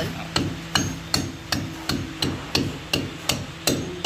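Steady hammer blows on a concrete column, about ten evenly spaced strikes at nearly three a second, each with a short ring. The blows are chipping pock marks into the smooth concrete face so the plaster mortar will grip it.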